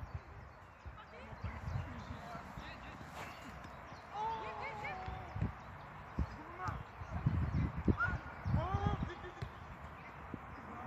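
Faint, distant voices calling and talking across a football pitch, with a few dull thumps of footballs being struck, mostly in the second half.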